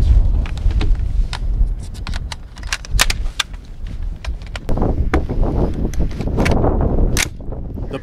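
Sharp metallic clicks and clacks of a Windham Weaponry AR-15 being handled: a magazine seated and the bolt run forward to chamber a round. Steady wind rumble on the microphone underneath.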